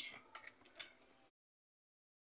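Faint light scrapes and clicks of a fork flaking cooked spaghetti squash into strands, then the sound drops out to dead silence a little over a second in.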